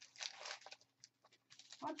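A sheet of deli paper rustling as it is laid down flat by hand, a short crinkly rustle of about half a second, followed by a few faint ticks.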